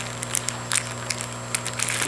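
Clear plastic bag crinkling as it is handled and set down, a scatter of short crackles.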